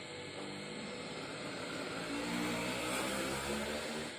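A vehicle engine running, growing louder through the second half and cutting off suddenly at the end.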